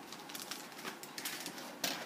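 A clear plastic bag crinkling and rustling as a plastic kit sprue is pulled out of it, with a light tap near the end.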